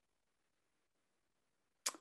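Near silence, ending in a short sharp click as a woman's voice begins.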